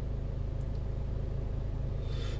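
Steady low rumble of a Range Rover Evoque's 2.0-litre Ingenium diesel idling, heard inside the cabin.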